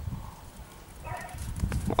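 Small Maltese dogs' paws running through snow close to the microphone: soft, irregular low thumps.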